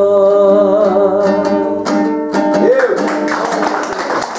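A man sings a held, closing vocal line over his own strummed dombra, the Kazakh two-string lute. His voice stops about halfway through while the dombra plays on, and applause starts to come in near the end.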